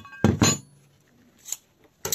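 Heavy rusty steel plate being handled and set down on a workbench. A short metallic clink and ring at the start is followed by a sharp knock just under half a second in and a light tap about a second and a half in.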